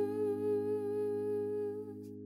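A singer holds the last note of an acoustic ballad over a sustained chord; the voice stops just before the end while the chord rings on and fades.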